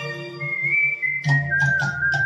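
A man whistling a melody over a karaoke backing track: a high held note about half a second in, then a step down to a lower held note as the accompaniment's beat comes back in.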